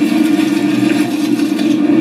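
A steady low drone, one held tone with a fainter lower one and a light hiss, coming from a television's speakers between lines of dialogue.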